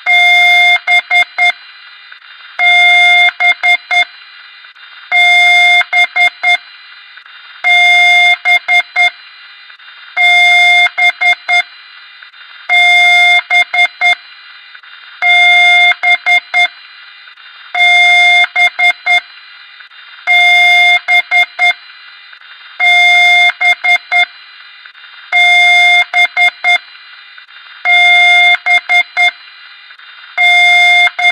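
Electronic beeper sounding a repeating pattern: one long beep followed by about four quick short beeps, the cycle coming round every two and a half seconds or so, over a steady hiss.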